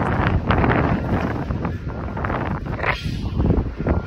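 Strong gusty wind buffeting a phone's microphone: a loud, uneven rumble that swells and dips with the gusts.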